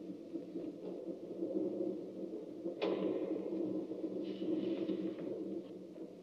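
Quiet film soundtrack playing over room speakers in a pause between lines of dialogue: a steady low hum, with a single knock about three seconds in.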